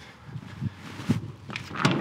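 Footsteps on a paved path, a few soft steps about two or three a second, with a louder noise near the end.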